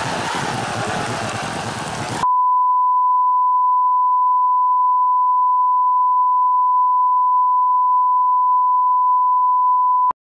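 Static hiss that cuts off sharply about two seconds in, followed by a steady 1 kHz test tone.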